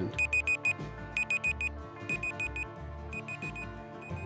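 Countdown timer sound effect: four quick high electronic beeps like a digital alarm clock, repeated once a second, over soft background music.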